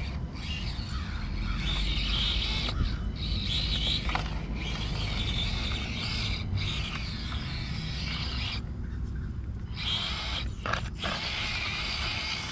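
Axial SCX24 micro RC crawler's small electric motor and gears whining in stop-start stretches as it is driven over rocks, over a steady low rumble.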